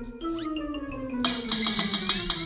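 A spinning prize wheel ticking, a quick run of sharp clicks starting a little over a second in, over background music.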